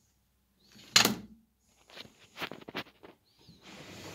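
Handling sounds at the TV: a sharp knock about a second in, then a quick run of small clicks and taps, and a soft rustle near the end.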